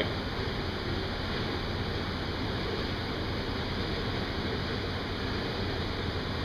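Steady rush of air from a blower running in a garage paint booth, even and unchanging, with a faint high whine in it.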